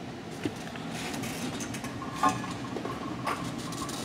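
Shop-built foot-operated welding turntable spinning on its pivot, its steel shaft turning in a cup with no bearings and one drop of grease. It gives a faint steady whir with a few light knocks, the clearest about two seconds in.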